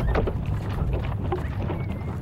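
Low, steady rumble and creaking of a huge wooden structure being rolled along on big wooden wheels, with scattered faint knocks.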